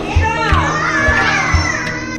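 A group of young children's voices calling out and singing over music with a steady drone and a beat of low thumps about every half second.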